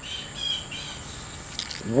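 Steady high-pitched drone of insects outdoors, with a few faint bird chirps about half a second in.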